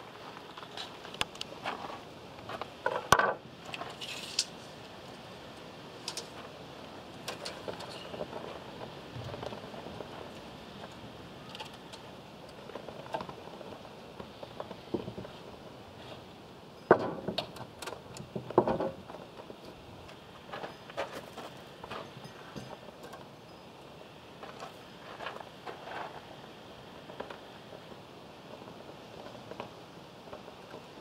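Scattered knocks and clicks of timber and hand tools being handled on a plywood workbench top: a softwood batten laid down, tools set out and a steel tape measure run along the batten. There are a few louder knocks, one about three seconds in and two close together past the middle.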